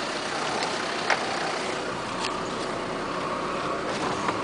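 An off-road 4x4 driving slowly over a rough grassy track. The engine runs steadily under a haze of body and track noise, with one sharp knock about a second in and a few lighter clicks.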